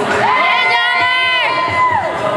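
A single high-pitched cheering shout from one person, held steady for about a second and a half and dropping off near the end, with crowd chatter around it.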